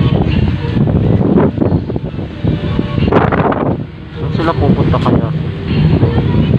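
Indistinct voices over outdoor street noise, with wind on the microphone.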